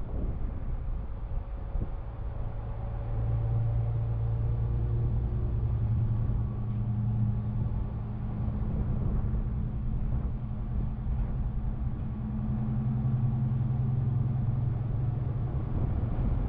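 Steady low hum of a motor vehicle engine, coming in a few seconds in and fading near the end, over a constant rumble of wind and road noise on the microphone.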